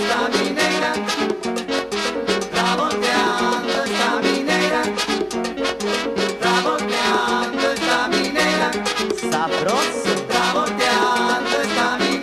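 Salsa band playing an instrumental stretch of the song without vocals, with horns over a fast, steady percussion rhythm.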